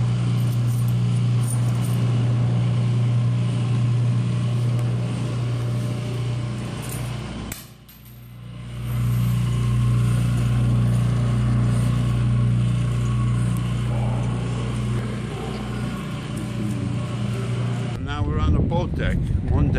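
Working model of a ship's triple-expansion steam engine running in its display case, its propeller spinning, making a steady mechanical hum. The hum drops out briefly about eight seconds in and then resumes.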